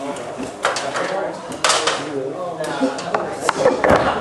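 A stepladder clattering and knocking as it is handled, with several sharp clanks, the loudest about one and a half seconds in, over murmuring voices.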